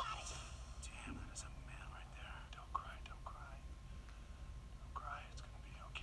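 Hushed, whispered speech in short broken phrases over a low steady hum, with one sharp click a little before the middle.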